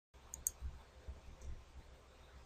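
Computer mouse click: one sharp click about half a second in, with a fainter one just before it, over a faint low hum.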